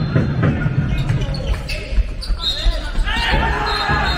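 Indoor handball game: the ball bouncing on the court floor, shoes squeaking, and players and spectators calling out, all echoing in a large sports hall.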